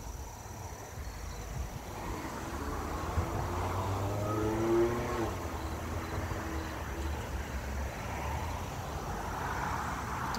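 A vehicle passing by: its engine sound builds over a few seconds, is loudest about five seconds in with a falling pitch, then eases off over a low rumble.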